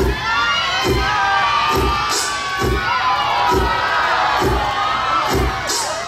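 Audience cheering and screaming, many high voices at once, over a slow, heavy drum beat of about one thump a second in the dance music.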